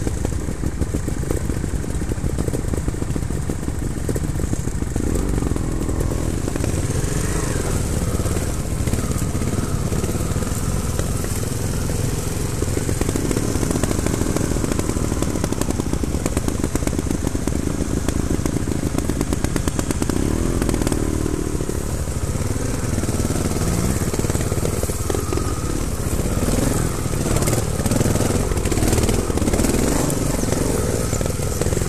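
Trials motorcycle engine running at low revs, the revs rising and falling now and then.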